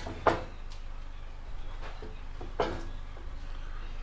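Several clunks and knocks as a bare motorcycle frame is set down and shifted on a motorcycle lift: a sharp knock just after the start, a few lighter taps around two seconds in, and another clunk a little later, over a low steady hum.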